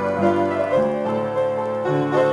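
Piano being played, several notes sounding together and ringing on, with new notes and chords coming in every fraction of a second.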